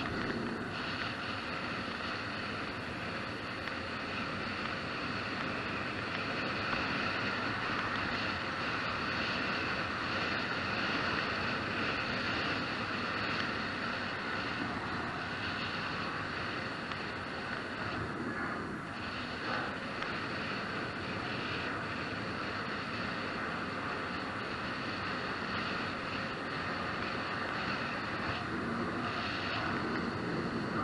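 Steady wind rush and tyre and road noise on an e-bike's camera while riding along.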